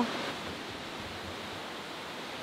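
Steady rush of a waterfall: an even hiss of falling water with no distinct events.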